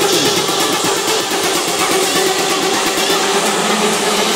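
Tech house DJ mix in a breakdown: layered sustained synth tones with a fast high ticking on top, the kick drum and bass left out.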